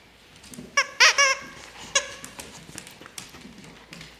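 Squeaker inside an Outward Hound plush snake dog toy squeaking as a dog bites and tugs on it: a short squeak, then a louder, longer wavering squeak about a second in, and a shorter one near two seconds.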